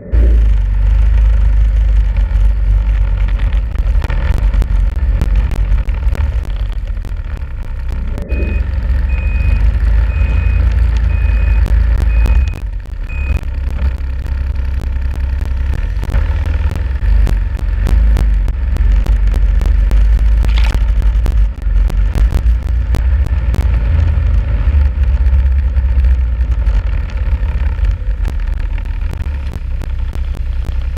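Snowmobile engine running under way, a loud steady low rumble heaviest in the bass. A string of about seven short high beeps comes in about eight seconds in and stops near thirteen seconds.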